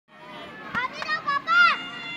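A young child's high-pitched voice calling out a few short syllables, ending in a louder, longer cry that rises and falls in pitch.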